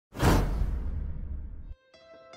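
Intro whoosh-and-hit sound effect. It hits almost at once, its hiss fades within about half a second, and a deep rumble holds until it cuts off suddenly near the end. A plucked note of the intro music comes in just as it ends.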